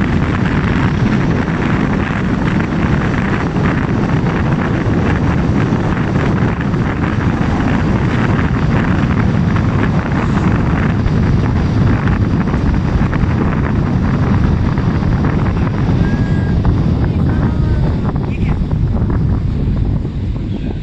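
Steady low rumble of road and wind noise from a car driving along a paved road.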